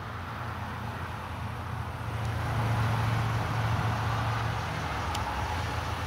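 Motor-vehicle rumble, low and steady, that grows louder about two seconds in and eases off again, as a vehicle passing by does.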